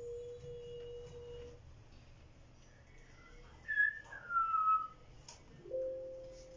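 A woman humming a single held note, then a short whistle falling in pitch about four seconds in, and another held hummed note near the end.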